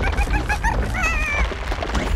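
A cartoon character's nonverbal voice: a run of about five quick, short, high calls, then one longer wavering call about a second in.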